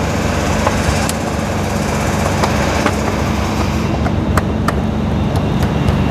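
A motor running steadily with a low, even hum. A few light clicks in the second half.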